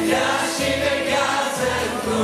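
Mixed group of voices singing a Romanian Christian worship song in harmony, a woman and a man leading on microphones, over a keyboard accompaniment with a steady bass pulse.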